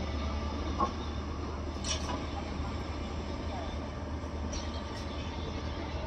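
Hyundai crawler excavator's diesel engine running with a steady low drone, with a few short knocks about one and two seconds in.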